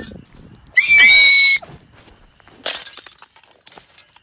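A loud, high-pitched shriek held for just under a second, followed about two seconds in by a short, harsh crash-like noise and another brief noise burst near the end.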